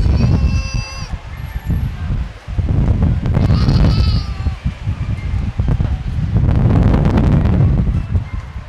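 Orca giving two short, high-pitched calls, one near the start and another about three and a half seconds in, the second bending slightly in pitch. Under them, a heavy low rumble of wind on the microphone comes and goes and is the loudest sound.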